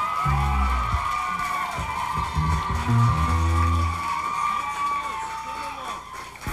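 Amplified band instruments left sounding after a song: a long held high tone runs on and stops shortly before the end. Under it, a few low bass notes step between pitches in the first few seconds.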